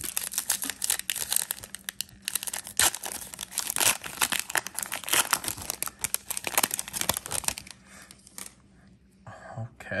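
Foil trading-card pack being torn open and crinkled, a dense run of crackling tears and rustles that dies down about two seconds before the end.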